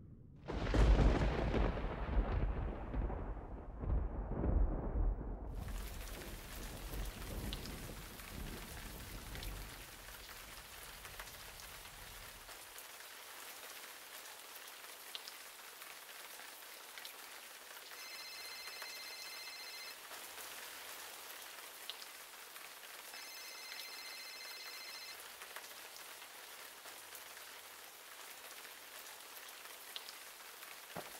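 A thunderclap about half a second in, rumbling away over some ten seconds, then steady rain. A high ringing sounds twice, about two seconds each time and some five seconds apart.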